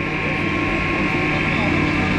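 Cable car station's overhead bullwheel and drive machinery running: a steady mechanical hum with a high whine.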